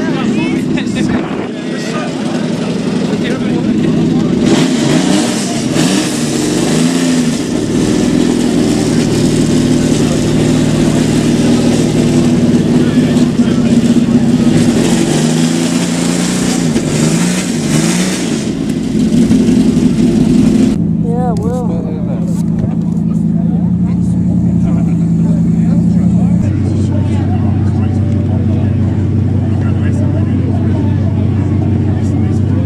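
A car's engine running with a steady note and several brief revs that rise and fall, over a crowd's chatter. Partway through, the sound changes abruptly to a steadier, lower engine note.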